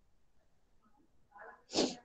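Near silence, then one short, sharp burst of breath noise from a person near the end.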